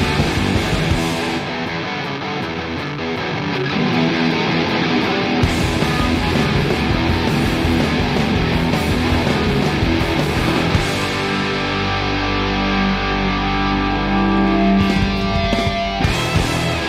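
Loud live rock band playing: distorted electric guitars, bass and drums. In the last few seconds the band holds its chords and lets them ring.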